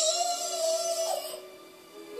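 A toddler singing one long held note for about a second, over a song playing in the background; the note dies away in the second half.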